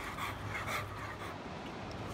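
Labrador retriever panting softly after swimming, over faint steady outdoor noise.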